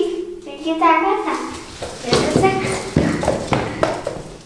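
Young girls' voices with high-pitched vocalizing and no clear words in the first second. This is followed by a noisier stretch of excited voices and sharp taps or claps.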